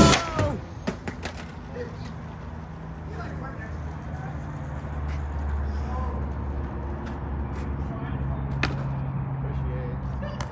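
Outdoor street ambience: a vehicle engine rumbling low and steady, getting a little louder about halfway through, with a few sharp clicks and knocks and faint voices.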